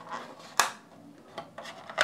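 Hands handling a plastic packaging tray and earbuds on a tabletop: light rubbing, a sharp click about half a second in, and a few faint ticks after.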